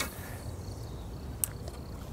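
Cast with a spinning rod: a brief swish of line leaving the reel at the start, then a single short high click about one and a half seconds in, over a steady low background rumble.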